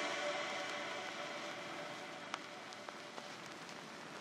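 The fading reverb tail of an electronic track's final chord: a faint hiss with lingering tones that dies away, with a few soft crackles in the second half.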